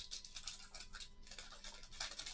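Wax-paper wrapper of a 1989 Fleer baseball card pack crinkling and crackling as it is torn and pulled open by hand, in a quick, irregular run of rustles.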